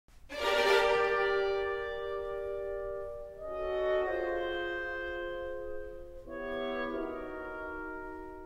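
Orchestral music: a slow series of long held chords, changing about every three seconds, the first one loudest.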